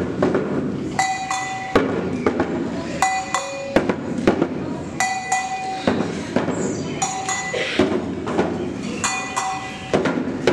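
Live percussion: hand drums played in a steady rhythm, with a ringing struck tone that comes back about every two seconds.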